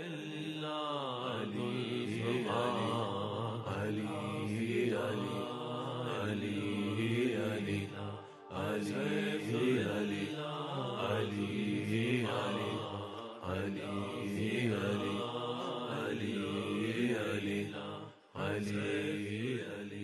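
Devotional vocal chant: a voice singing long held, gliding lines, with two short breaks partway through.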